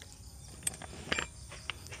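A few faint, light clicks and taps against a quiet background, as a small part is handled.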